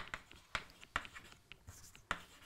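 Chalk writing on a chalkboard: a quick, irregular run of faint taps and short scratches as a word is written.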